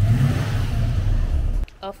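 A car engine running, rising briefly in a rev just after the start, then cutting off suddenly near the end.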